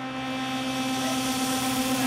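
A sustained suspense drone, one steady pitch with overtones, growing steadily louder as a build-up of tension ahead of the flip.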